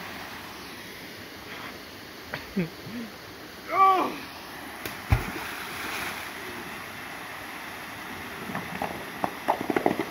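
Small waterfall pouring steadily down a rock chute into a swimming hole. About five seconds in, a rock slid down the cascade drops into the pool with a single sharp plunge, just after a short shout, which is the loudest sound.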